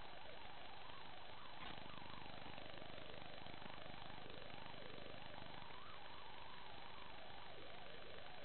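Steady hiss with a faint whine that wavers up and down in pitch again and again, typical of an FPV quadcopter's motors changing speed with the throttle, heard over a low-quality analog video-link recording.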